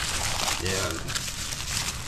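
Thin plastic bag crinkling and rustling as hands unwrap an item from it, a continuous crackly rustle.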